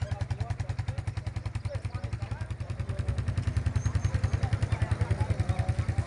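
A small engine idling close by, with a steady, even putter of about eight beats a second. Voices chatter faintly in the background.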